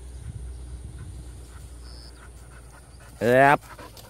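A steady low rumble with faint rustling, then a man's short, loud shouted call about three seconds in, rising in pitch, of the kind a handler uses to call to a working bird dog.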